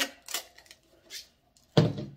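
Light handling noises of a plastic cup and hot glue gun on a tabletop, then one sharp thump near the end.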